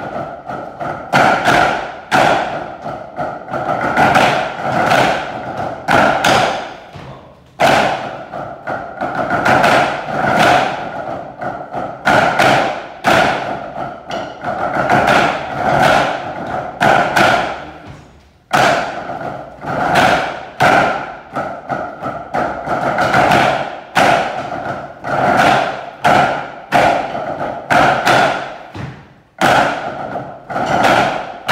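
A group of drummers playing rudimental patterns in unison with wooden sticks on tabletop practice pads, giving a dense rattle of rolls and strokes. The playing comes in repeated phrases with brief breaks about 7 and 18 seconds in, and again near the end.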